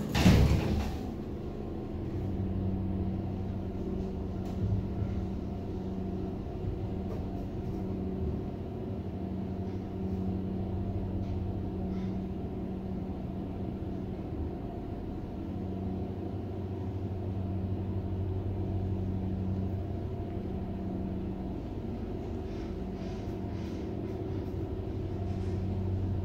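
1979 US Elevator hydraulic service elevator car travelling up, its pump unit giving a steady low hum with a rumble from the moving car. A short louder noise comes right at the start.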